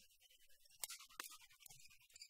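Near silence: quiet sports-hall room tone, broken by two short, sharp clicks close together about a second in.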